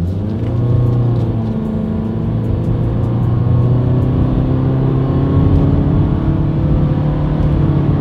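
A 2020 Honda Fit's 1.5-litre four-cylinder engine under full throttle, heard from inside the cabin. It revs up just after the start, then holds a loud, fairly steady drone whose pitch rises only slowly, as the CVT keeps the revs up while the car gains speed.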